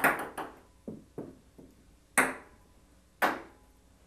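Ping pong balls bouncing on a hard table: a quick run of bounces at the start, a few fainter taps, then two loud single sharp hits about a second apart.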